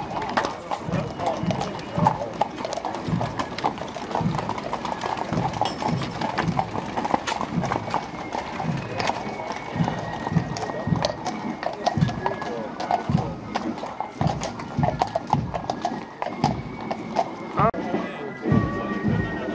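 Hooves of carriage horses clip-clopping on an asphalt street, a steady stream of sharp hoofbeats as several horse-drawn carriages pass, with people talking around them. Band music begins faintly near the end.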